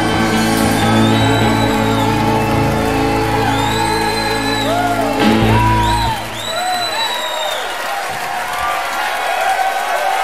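A live band's held final chord rings and then stops about six seconds in, while the audience cheers, whoops and gives high whistles.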